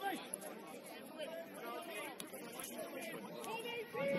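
Faint, overlapping voices of footballers calling on the pitch and spectators chatting along the touchline, with no words clear.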